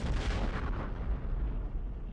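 Cinematic boom sound effect for a logo reveal: a sudden deep impact at the start, followed by a low rumble that carries on.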